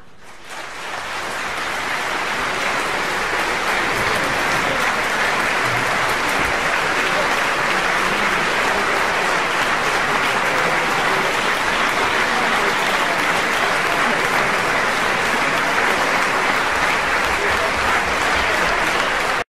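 Audience applause in a concert hall, swelling over the first few seconds after the music ends and then holding steady.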